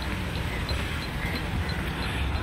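Steady low rumble of city road traffic, with faint high ticks repeating about three times a second.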